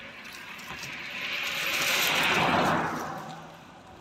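A vehicle passing by: a rush of road noise that swells to a peak a little past halfway and then fades, dropping in pitch as it goes.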